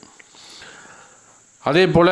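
A man's audible in-breath through the nose, a soft sniff of about a second between spoken phrases. His speech starts again near the end.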